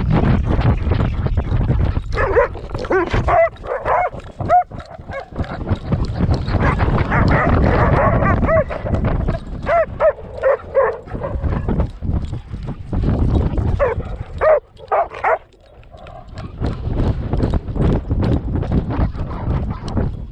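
Dogs racing flat out on sand, heard from a harness-mounted action camera: a fast run of paw thuds and wind rush on the microphone, broken three times by bouts of short, high yips.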